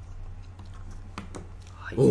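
A few light clicks at a computer, mostly in the second half, over a steady low hum.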